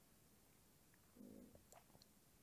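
Near silence: room tone, with a brief faint low rumble a little over a second in and a small click near the end.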